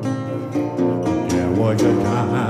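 Metal-bodied resonator guitar fingerpicked in an acoustic blues instrumental passage, with one rising glide near the end.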